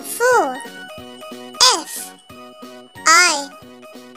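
A child's voice calls out three single letters about a second and a half apart, F, I, V, spelling the word 'five', over a light, repeating children's backing tune.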